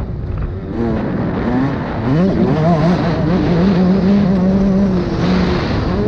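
Dirt bike engine under riding load: the revs drop off at the start, climb hard about two seconds in, then hold high with small rises and dips along a straight.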